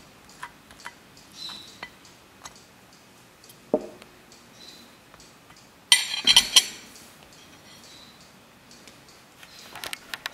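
Table knife scraping and clinking lightly against a ceramic plate while spreading jam on a waffle, with a louder burst of clinks about six seconds in as the glass jam jar and the knife are set down.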